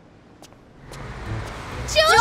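A low bus engine rumble in a cartoon soundtrack, fading in about a second in and growing louder, as of a bus drawing near.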